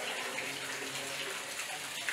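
Water falling into a shallow pool and splashing steadily.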